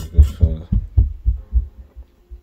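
Handling noise from a sneaker being gripped and flexed in the hands close to the microphone: a quick run of soft low thumps, about four a second, that die away near the end.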